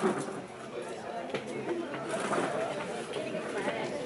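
Many people chattering at once, a steady babble of overlapping voices with no single speaker standing out.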